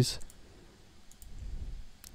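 A couple of faint, sharp computer mouse clicks about a second in and again at the end, with a low rumble in between.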